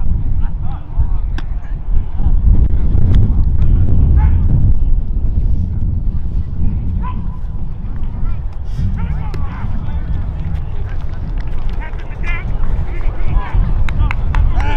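Voices calling out across a football field, scattered and indistinct, over a heavy, uneven low rumble on the microphone; the voices come more often in the second half.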